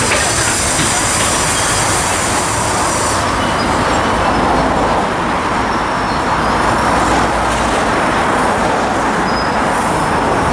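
Steady, loud machine noise that runs without pause, with no distinct strokes or changes in pitch.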